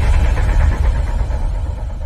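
Deep low rumble of an intro sound effect, slowly fading away, the tail of a falling-pitch whoosh.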